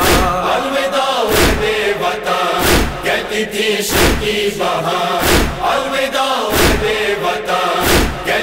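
A chorus of male voices chanting a noha lament over a steady beat of heavy thumps, about one every 1.3 seconds: the matam (chest-beating) rhythm that keeps time in nohay.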